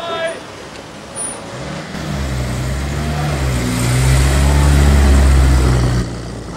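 Small open-top sports car's engine driving past close by: it gets steadily louder as the car approaches and is loudest about five seconds in, just as it passes.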